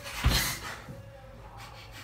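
A single dull thump about a quarter second in, a foot coming down hard on the floor after a kick, followed by faint shuffling in a small room.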